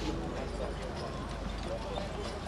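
A team of four ponies trotting on a sand arena, their hoofbeats clopping steadily as they pull a carriage, with voices talking in the background.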